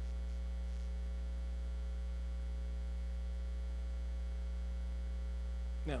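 Steady electrical mains hum in the sound system, unchanging. A man says one word right at the end.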